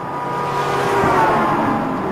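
Car road noise swelling up and holding, with soft background music underneath.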